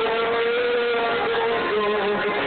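Live rock band playing, guitars strumming under one long held sung note that slides up into place and drops lower near the end.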